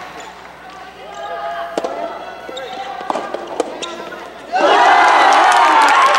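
Soft tennis rally: sharp pops of the soft rubber ball off the rackets and court, with voices in the hall. About four and a half seconds in, a sudden loud burst of shouting and cheering from many supporters as the point is won.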